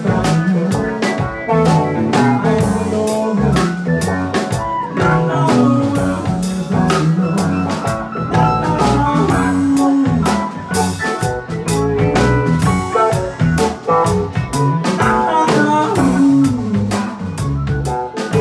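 Live rock band playing a jam, with electric guitars and bass over a drum kit and frequent drum and cymbal hits.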